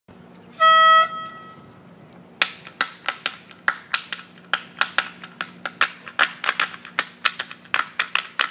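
A single short reed-like note, as from a pitch pipe giving the starting pitch, about half a second in. Then steady finger snaps, about three a second, count in the tempo for an a cappella group.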